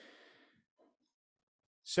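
A man's brief, soft exhale, then silence until he starts speaking again near the end.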